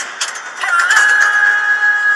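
Film-trailer score: a single high vocal note that swoops up about a third of the way in and is then held steady, over music.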